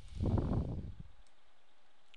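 A low, rumbling puff of breath on the microphone, about a second long near the start, like a sigh.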